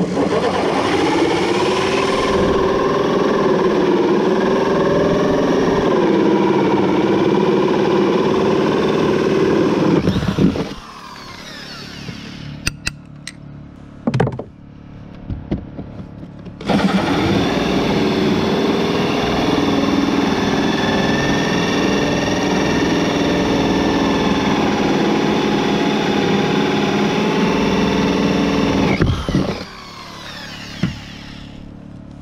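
Drill running a cheap 2-inch hole saw through wooden roof decking boards to cut vent holes. There are two long cuts of about ten and twelve seconds, with the motor's pitch dipping and recovering under load. Between the cuts there is a pause with a few sharp knocks.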